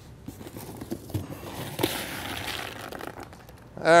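Faint rustling and small clicks of handling as shelled corn kernels are fetched and gathered up, with a brief crinkly rustle about two seconds in.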